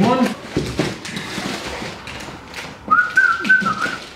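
Plastic courier bag crinkling as it is handled, then one whistled note, held for about a second near the end.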